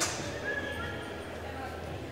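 Indistinct voices echoing in a large gymnasium hall. A sharp knock right at the start rings on briefly, and a short high squeak follows about half a second in.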